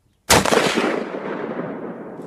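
A single shot from a .30-06 bolt-action rifle about a quarter second in. Its loud report is followed by a long rolling echo that fades slowly over the next second and a half.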